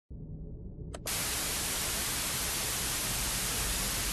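Analogue television static: a low hum, a click about a second in, then steady white-noise hiss.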